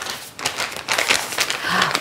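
A small packet of dry yeast-dough mix crinkling as it is handled and torn open, with irregular crackles.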